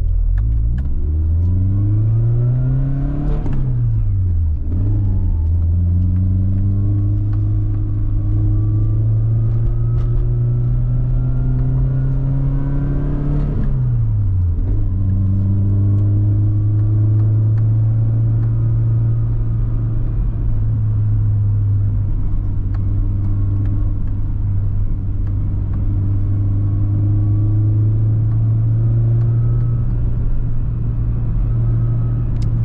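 Nissan 240SX's four-cylinder engine with an aftermarket exhaust, heard from inside the cabin, pulling away under acceleration. It rises in pitch, drops at upshifts about 4 s and 14 s in, then settles into a steady cruise.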